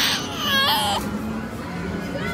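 Infant crying: one high-pitched, wavering wail that breaks off about a second in as the baby is given a bottle.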